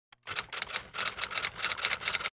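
Typewriter keystroke sound effect: a quick run of sharp key clacks, about six a second, as a title is typed out letter by letter.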